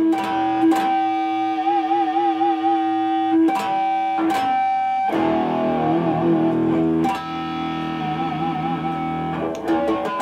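PRS electric guitar sounding natural harmonics at the fifth fret: strings picked while the fretting finger only grazes them over the fret wire, giving clear, bell-like tones that ring on. Several notes waver with a vibrato from the tremolo bar.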